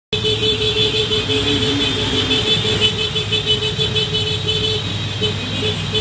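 A convoy of motorcycles and scooters riding together, engines running, with horns sounding over and over above the engine noise.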